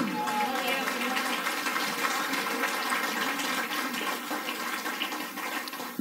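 Congregation applauding, a steady wash of clapping mixed with scattered voices of praise, tapering slightly toward the end.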